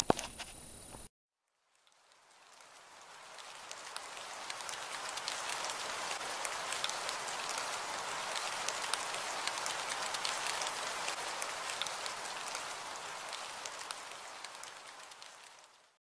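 Steady rain, a dense hiss of many small drop clicks, fading in after a brief silence and fading out near the end.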